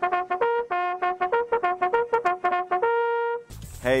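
Bugle call: a quick run of short tongued notes leaping among a few pitches, ending on one held note that cuts off about three and a half seconds in.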